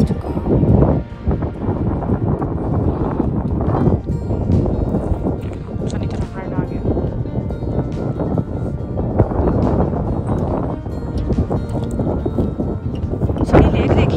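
Wind buffeting the microphone in a steady, loud rush, with background music underneath.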